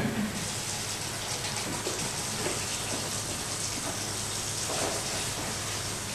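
A steady hiss, like rushing air or water, that rises slightly about a third of a second in and then holds even, over a faint steady low hum, with a few faint soft rustles.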